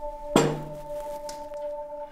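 A club strikes a glass tabletop once, about a third of a second in: a sharp knock on glass that rings briefly, over a steady droning music tone like a singing bowl.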